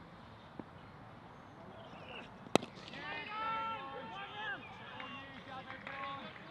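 A single sharp crack of a cricket bat striking the ball, followed by players' voices calling across the field as the batsmen run a single.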